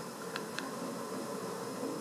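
Steady, low room-tone hiss with two faint clicks close together about half a second in.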